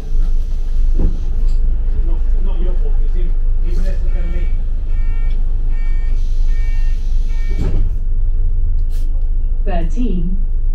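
Double-decker bus interior: a steady low engine rumble with indistinct passenger voices, and two sharp clunks, one about a second in and one near the end. From about four seconds in, a run of about six evenly spaced electronic beeps sounds, roughly two a second.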